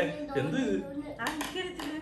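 Voices talking, with a few sharp hand smacks about three quarters of the way through.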